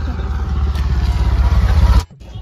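A motorcycle engine running with a fast pulsing beat, growing steadily louder as it comes near.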